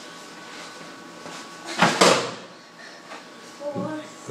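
Two heavy thumps about a fifth of a second apart, about two seconds in, from a workout impact against a door. A short voice sound follows near the end.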